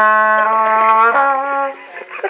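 A trumpet played by a boy trying it out: a few held notes of a second or less each, stopping shortly before the end.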